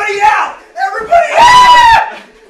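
Young men shouting and yelling in horseplay, then one long, loud, high-pitched scream in the second half.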